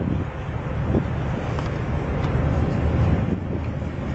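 Wind buffeting the camera microphone outdoors: a steady, uneven noise weighted to the low end.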